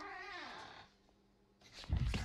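A drawn-out meow that falls in pitch and fades out within the first second, like a cat's. Near the end a loud noisy clatter begins.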